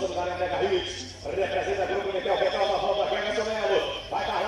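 A man's voice over the arena loudspeakers, with a short break about a second in, as horses gallop on the sand track chasing a bull.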